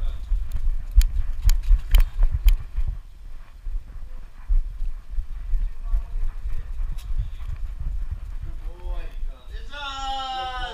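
The dog's running footfalls and the bumping and rubbing of a GoPro strapped to its harness. There are sharp knocks about twice a second in the first few seconds and a low rumble of handling noise throughout.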